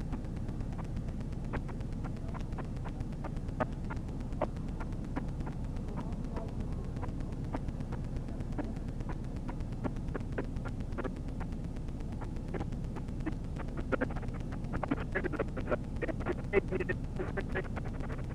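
Steady low hum of a stopped patrol car's engine idling, heard from its dash camera, with scattered faint clicks and a quick run of short sharp sounds in the last few seconds.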